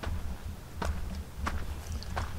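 Footsteps on dirt and grass, about four steps a little over half a second apart, over a low rumble.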